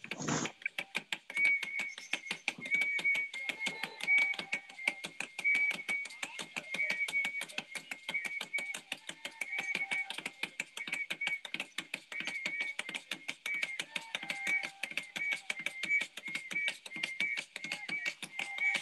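Fast, steady rhythmic clicking or rattling, with short high tones recurring over it: the soundtrack of a traditional dance video playing over a video call.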